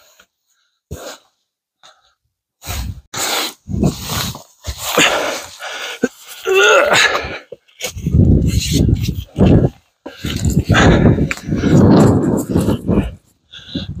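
A man breathing hard and grunting with effort as he scrambles up rocks, in irregular bursts starting a few seconds in. Wind buffets the clip-on microphone, with rustling from his jacket.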